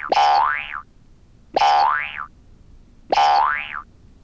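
Cartoon 'boing' sound effect, three times about a second and a half apart, each a short twangy sound sliding upward in pitch.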